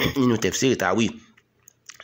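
A man speaking, lecturing in Yoruba into a microphone, then a short pause with one or two faint clicks near the end.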